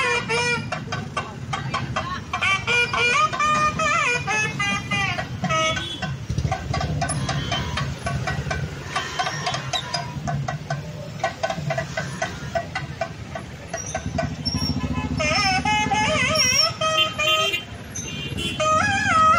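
Slow street traffic of motorbikes and scooters running, with horn toots, under music with a wavering melody.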